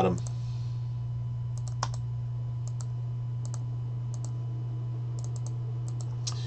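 Sparse, short clicks from a computer mouse and keyboard, a dozen or so spread unevenly, over a steady low electrical hum.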